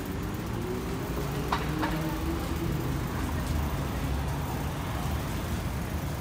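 Road traffic: a motor vehicle going past, its engine tone rising and then slowly falling over a steady low rumble.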